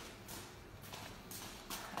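Footsteps, about two a second, faint and soft-edged like slippers on a hard floor.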